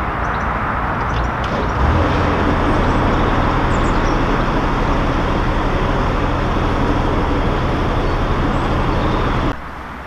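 Narrowboat's diesel engine running steadily under way, with a dense rushing noise over it, getting a little louder about two seconds in and cutting off abruptly near the end.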